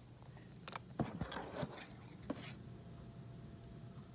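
Handling noises from an opened tuna tin being moved about close to the microphone: a handful of soft clicks, knocks and scrapes over the first two and a half seconds, then quieter.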